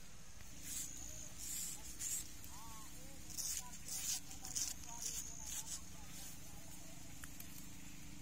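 Shaving strokes on a lathered, stubbly beard: short crisp scrapes of a thin iron blade and a shaving brush through the foam, coming in clusters from about one to six seconds in.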